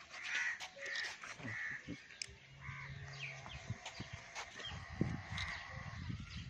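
A bird calling outdoors: several short calls in the first two seconds, then scattered fainter calls, with a low rumble rising near the end.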